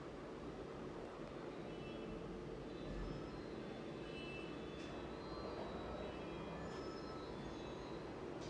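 Steady low background rumble, with faint brief high-pitched tones scattered through it from about two seconds in.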